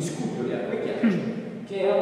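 Only speech: a man talking, lecture-style.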